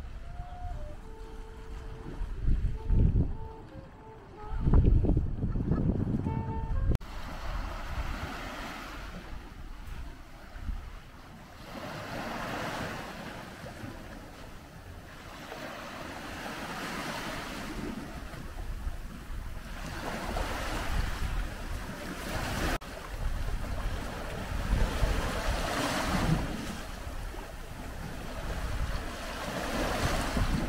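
Sea waves washing up onto a sandy shore, each swelling and falling away about every four to five seconds. Gusts of wind rumble on the microphone, strongest in the first seconds.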